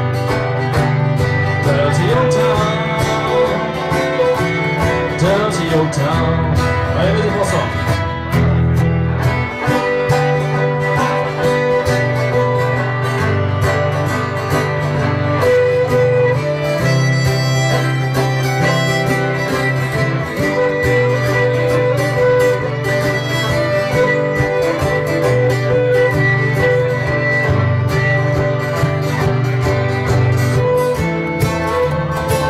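Live acoustic Irish folk band playing an instrumental break between verses: fiddle and banjo over strummed guitar and ten-string cittern, with a steady strummed rhythm and bass notes.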